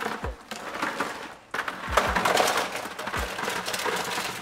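Stone crab claws poured from a plastic bucket into a pot of boiling water, clattering against each other and the pot as they tumble in. It comes in two pours, with a short pause about a second and a half in, and the second is louder and longer.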